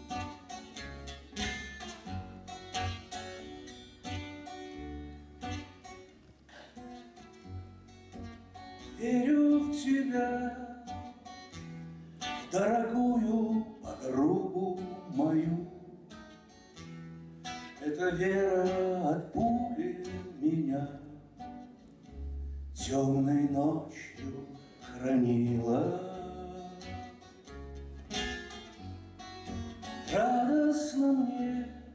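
A man singing with his own acoustic guitar. The guitar plays alone for the first several seconds, and the voice comes in about nine seconds in, in phrases separated by short pauses.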